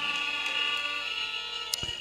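Steady high-pitched ringing tones from a public-address system, fading slowly, with a single click near the end.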